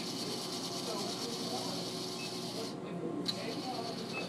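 Claw machine running, its motors giving a steady whirring hiss that cuts out for about half a second near three seconds in and then resumes, over a faint murmur of background voices.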